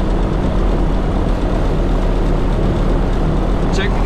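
Light aircraft's piston engine idling steadily just after start, a constant low propeller drone heard from inside the cockpit.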